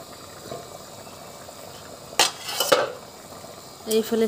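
Curry boiling in an iron karahi, with metal clattering twice a little over two seconds in as the steel lid and pan knock together and stirring begins.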